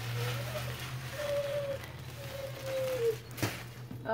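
A dog whining in four thin, high, drawn-out whimpers that rise and fall, over a low steady hum. There is a single sharp knock near the end.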